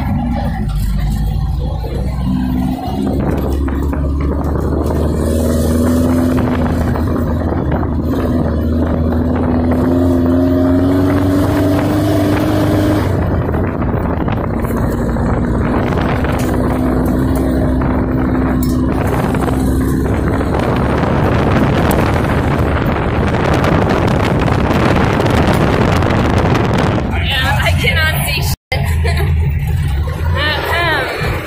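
Air-cooled VW Beetle flat-four engine of a lifted Baja Bug running under load on an off-road drive, heard from inside the car. Its pitch slowly climbs and eases, with a noisy rush growing louder in the second half.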